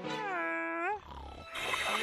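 Wordless cartoon character voice: one drawn-out vocal sound that dips and then rises in pitch, lasting about a second. After a short low rumble, a louder, noisier sound builds near the end.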